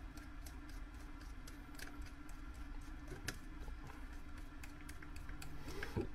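Faint, irregular ticks and a few sharper clicks of a screwdriver turning the idle mixture screw in a motorcycle carburettor body, over a steady low hum.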